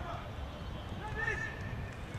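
Players shouting across an outdoor football pitch, with one drawn-out call about a second in, over a steady low rumble.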